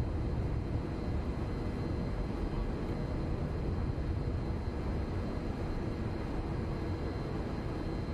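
Steady low rumble of outdoor street background noise, even throughout with no distinct events.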